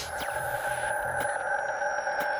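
Electronic logo sting: a steady held synthesized chord with a sonar-like ring, with faint slowly falling high sweeps and a couple of light ticks over it.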